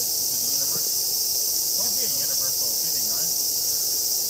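A chorus of cicadas buzzing in a steady, high-pitched drone, with faint voices underneath.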